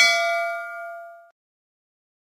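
Notification-bell chime sound effect: a single bright ding that rings out and fades away over about a second and a half.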